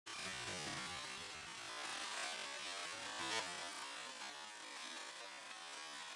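Wind rushing across the microphone, a steady hiss with a brief louder swell about three seconds in.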